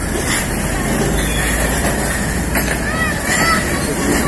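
Freight train of flat wagons carrying tractors rolling past on the rails with a steady low rumble and a few clacks, with people's voices faintly in the background.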